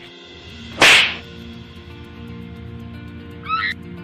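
A loud whoosh sound effect about a second in, marking a scene transition, then a short run of rising chirps near the end, over faint background music.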